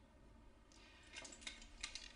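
Near silence with a few faint, short clicks and rustles in the second half.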